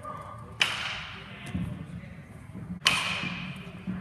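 Two sharp cracks about two seconds apart, the second the louder, each echoing on through a large indoor turf hall: baseballs being struck during fielding practice.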